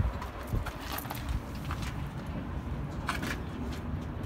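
Footsteps on loose gravel and a few short knocks of handling noise as a hand-held phone is lowered toward the ground, over a low steady rumble.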